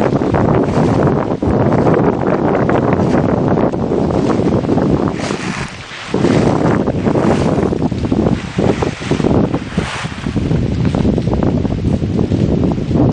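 Wind buffeting the camera microphone: a loud, gusting rumble that swells and falls, easing briefly about halfway through.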